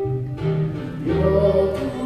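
Live music: singing over a string accompaniment, with a bass line moving in held notes.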